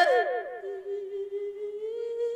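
A Thai Buddhist monk's voice singing a lae sermon: it glides down from a wavering phrase into one long held note, rising slightly near the end.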